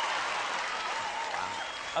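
Studio audience applauding, fading slowly, with a few voices calling out in the crowd.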